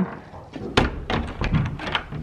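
A wooden horse-stall door is shut with a thunk about a second in, followed by several lighter clicks of its metal latch being fastened.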